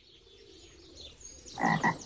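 A short frog croak near the end, over faint background ambience.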